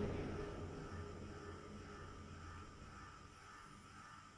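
A low rumble fading away over the first two to three seconds, leaving faint room tone.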